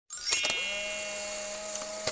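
Electronic chime sound effect for an intro card: a bright shimmering ding, then two held steady tones underneath.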